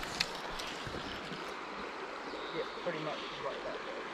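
Steady rush of a small creek flowing, with a sharp click about a quarter second in.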